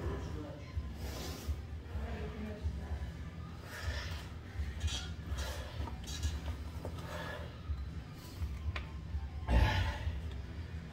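Indistinct voices and low room noise with a steady low hum, a few light clinks and clicks, and one louder thump near the end.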